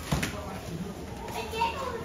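Background chatter of visitors with children's high voices, and a short sharp knock just after the start.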